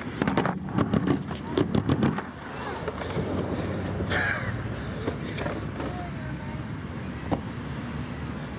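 Handling knocks and clicks from a skateboard being turned over and one of its wheels checked for a flat spot close to the microphone. The knocks are thickest in the first two seconds, with one more click near the end, over a steady low background noise.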